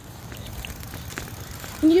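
Low steady rumble of wind on the microphone and tyre noise from a bicycle being ridden.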